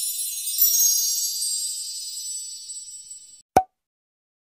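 Logo-animation sound effect: a high, glittering chime shimmer that fades out about three and a half seconds in, followed by a single short pop.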